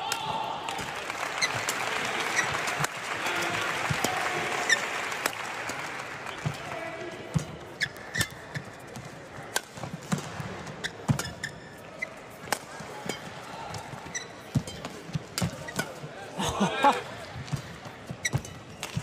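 Badminton rally: rackets strike the shuttlecock in sharp cracks roughly once a second, with shoes squeaking on the court floor near the end. A crowd murmur under the first few seconds fades as play goes on.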